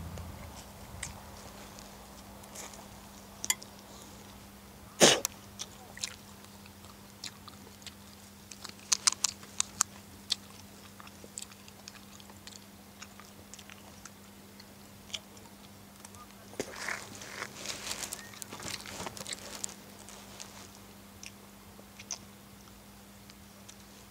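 Scattered sharp clicks and light rustling over a faint steady low hum. There is one loud click about five seconds in, a quick run of clicks a few seconds later, and a denser patch of rustling and crackling near the end.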